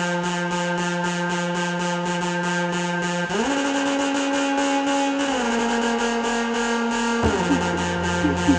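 Electro house music: a held synth tone that slides up in pitch about three seconds in and steps down again a couple of seconds later. Near the end it drops back, and a pulsing bass comes in.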